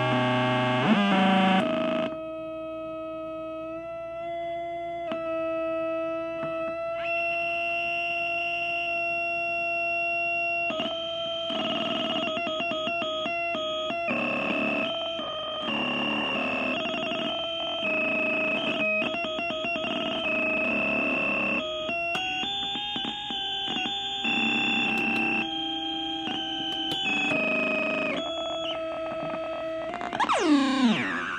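Homemade logic-gate feedback oscillator sounding electronic drone tones with overtones, whose pitch jumps in steps as its knobs and switches are turned. A loud, noisy warble opens it, then steady tones settle in, and from about a third of the way through they turn buzzy and stuttering.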